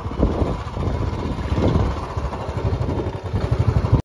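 Motorcycle engine running while the bike is ridden, heard from the pillion seat just behind the rider, a steady low thrum that rises and falls unevenly.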